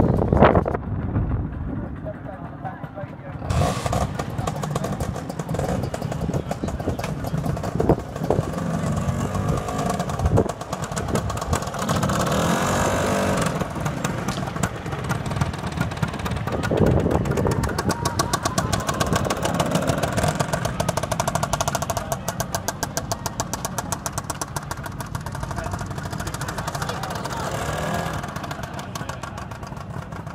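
Small two-stroke engine of a vintage scooter running as it is ridden slowly past, over people talking.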